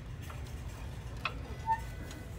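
Steady low rumble of a store's background, with one light click a little past halfway and a short, high beep near the end.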